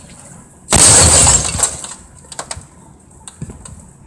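A CRT television's glass picture tube implodes with a sudden loud crash of shattering glass about two-thirds of a second in. The crash fades over about a second, and a few small clinks of falling glass follow.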